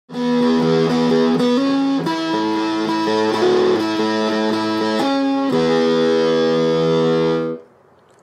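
Electric guitar played through an amplifier with heavy fuzz distortion: a slow riff of long, held notes and chords that change every second or so, then cut off near the end.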